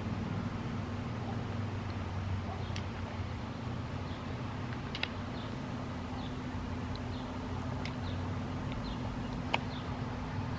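Steady low mechanical hum with faint bird chirps over it, and a few small, sharp clicks, the clearest near the end.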